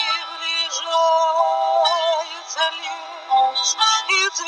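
A romance sung in long held notes with vibrato over an instrumental backing track.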